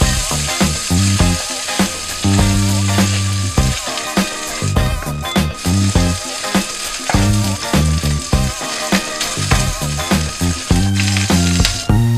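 Food sizzling in a hot pan as it is stir-fried and stirred, with a steady hiss, under background music with a rhythmic bass line.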